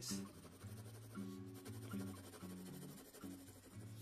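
Mechanical pencil with 2B lead shading on sketch paper, a soft, steady scratching, under quiet background music with held low notes.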